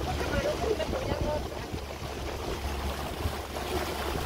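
Wind rumbling on the microphone aboard a moving boat, with water noise and faint voices in the background.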